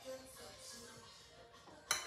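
Faint background music, with a single sharp clink near the end as a fork strikes the food bowl.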